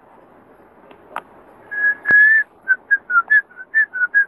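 A person whistling a short tune: one held note about halfway through, then a run of quick short notes at slightly changing pitch. A single sharp click sounds during the held note.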